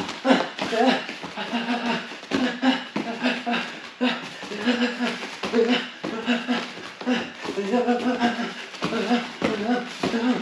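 A person's voice in short sharp bursts, about two a second: grunts and forced exhalations timed with punches, knees and kicks thrown in quick succession during kickboxing shadow work.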